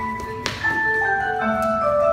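Ballet class music playing: a melody of short, evenly paced notes moving up and down in steps, with a sharp click about half a second in.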